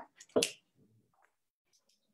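A single short, sharp click or snap about half a second in, followed by faint scattered rustles.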